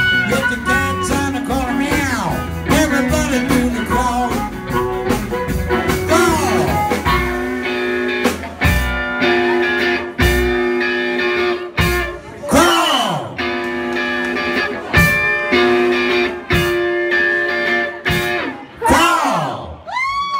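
Live blues band playing an instrumental passage on electric guitar, amplified blues harmonica, drums and bass. About eight seconds in, the band drops to short stop-time hits with long bending notes between them, and the tune winds to its close near the end.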